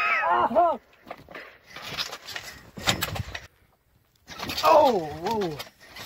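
A person's voice exclaiming a drawn-out, wavering "oh" near the start and again near the end, with scattered scuffing and rustling noise between, broken by a brief dead-silent gap in the middle.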